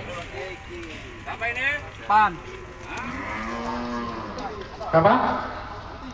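Cattle mooing: several calls that rise and fall in pitch, the longest drawn out for over a second about halfway through.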